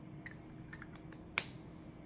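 Makeup packaging being handled: a few faint ticks and one sharper click about one and a half seconds in.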